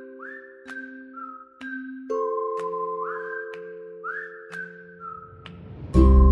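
Background music: a whistled melody that slides up into its notes, over held chord tones and light clicking percussion.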